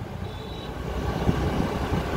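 Low, steady rumble of a motorcycle riding along a road, engine and wind noise mixed together.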